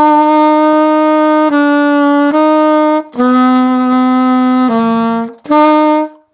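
Saxophone playing a slow slurred phrase of held notes: C slurring down to B and back to C, a short breath, A slurring down to G, another breath, then a final held C.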